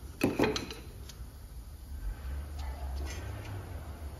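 Light clicks and knocks of hands and a tool on a car's front brake caliper, bunched in the first second, with a few fainter ticks later, over a steady low hum.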